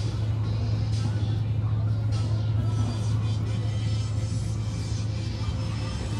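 Shop background: a steady low hum with faint background music.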